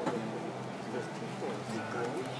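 A man singing into a microphone with electric guitar accompaniment.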